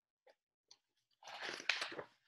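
Pages of a large hardcover picture book being handled and turned: a couple of faint taps, then about a second of paper rustling with a sharp snap near the end.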